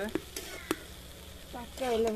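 Metal spatula stirring and scraping shredded vegetables in a black iron wok, with a few sharp clicks of the spatula against the pan in the first second and a faint sizzle of frying underneath.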